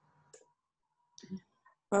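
Faint short clicks in an otherwise near-silent pause of a video-call audio feed, then a woman starting to speak with an 'ähm' just before the end.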